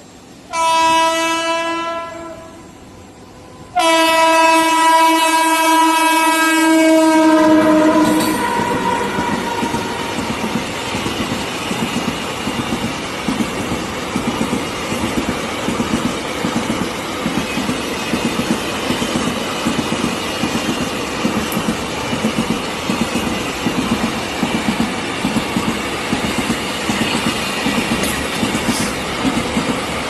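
Locomotive horn sounds twice, a short blast and then a longer one of about four seconds that dips in pitch as it ends. Then a double-stack container freight train rolls past with a steady rumble and the rhythmic clatter of its wagon wheels on the rails.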